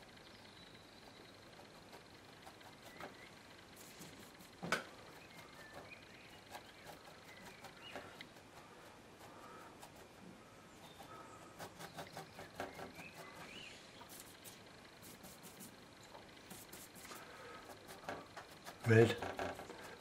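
Faint scratching and dabbing of a stiff bristle brush working oil paint onto an MDF board, with one sharp click about five seconds in. A short mumbled word comes near the end.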